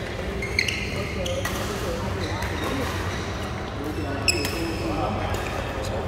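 Badminton racket strings striking a shuttlecock in a rally: sharp pinging hits about half a second in and again about four seconds in, with a fainter hit in between, over the steady hum of a large hall.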